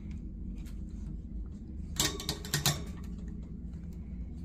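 A quick cluster of clicks and rattles about two seconds in, from a wand toy's stick knocking against wire cage bars as a cat bites and bats at it. A steady low hum runs underneath.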